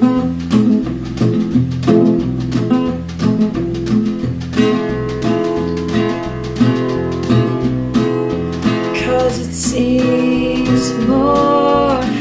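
Song accompaniment of steadily strummed acoustic guitar over a repeating bass line, in a wordless stretch between sung lines. A pitched melody line comes in about halfway through and slides upward near the end.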